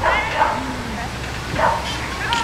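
A dog barking: a few short barks, the first right at the start and another about a second and a half in.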